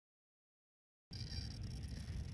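Dead silence for about the first half, then faint steady outdoor background noise with a low rumble starts abruptly.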